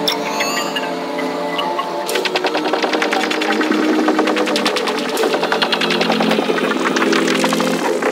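Darkpsy psytrance at 156 bpm in a breakdown with no kick or bass: layered synth lines, joined about two seconds in by dense, rapid ticking percussion.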